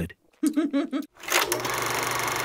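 A telephone ringing: a fast, steady bell rattle starts about one and a half seconds in, after a short voiced sound.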